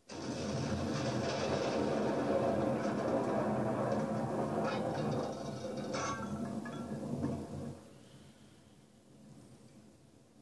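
A large explosion blowing a van apart: a sudden blast that carries on as a long, noisy rumble for about seven seconds, with a few sharp clatters of debris towards the end, then dies away to a faint hiss.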